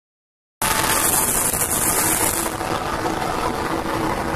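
Automatic LPG gas burner running: a loud, steady rushing noise that starts abruptly just over half a second in, with a high hiss that eases off about two and a half seconds in.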